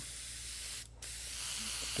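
Iwata Micron airbrush spraying paint: a steady hiss of air and paint. It cuts out briefly a little under a second in, then starts again.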